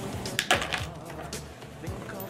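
Soft background music with a few small clicks and rustles: pieces of Cinnamon Toast Crunch cereal being dropped into an empty cardboard carton, the loudest tick about half a second in.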